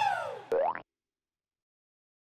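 Logo sound effect for the yes channel: a falling, springy glide, a sharp click about half a second in, then a quick rising glide that cuts off suddenly before the first second is out.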